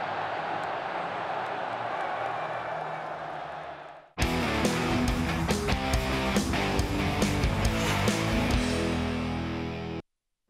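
A large stadium crowd cheering, fading out about four seconds in. The programme's theme music then comes in suddenly and plays on, rhythmic and loud.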